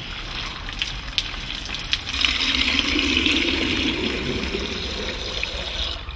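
Water running from a garden tap into a small plastic container, starting about two seconds in and running steadily. A few light handling knocks come before it.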